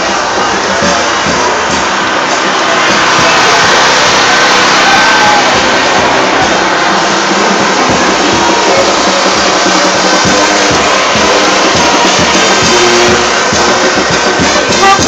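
New Orleans second-line brass band playing over a steady drum beat, amid a loud street crowd talking and shouting.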